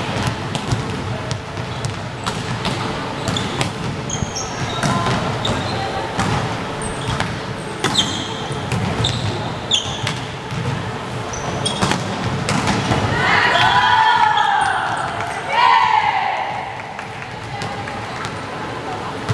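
Indoor volleyball rally: sharp smacks of hands on the ball and of the ball on the wooden floor, short high squeaks of sneakers on the court, and players calling out, with a burst of loud shouting about two-thirds of the way through.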